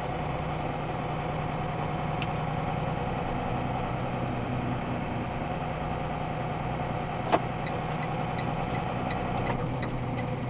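Box truck's engine and road noise heard inside the cab while driving at low speed, a steady hum. A single sharp click about seven seconds in, then a regular ticking of about four ticks a second, like a turn-signal relay.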